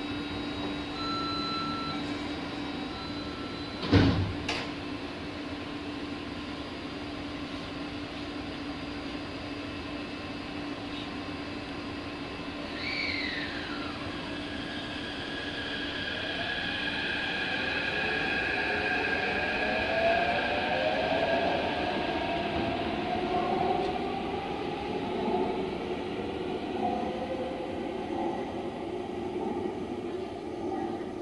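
Taipei Metro C371 electric train departing: a short warning beep sounds and the doors shut with a sharp thump about four seconds in. The train then starts off, its traction motors whining upward in pitch with rising rail noise as it accelerates away.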